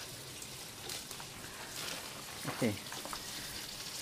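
Steady, faint hiss of water running and splashing in a backyard aquaponics system of fish tank and gravel grow beds, with the water pump just switched back on.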